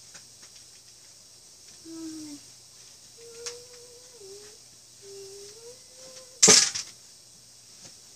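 A person softly humming a few held notes, low and steady in pitch, then a brief loud burst of rustling noise about six and a half seconds in.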